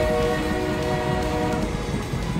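Train horn sounding one long blast of several notes at once, cutting off shortly before the end, over a low rumble.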